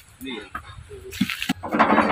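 Wrapped metal shelving parts being loaded onto a pickup truck's bed: two short knocks about a second in, over low voices.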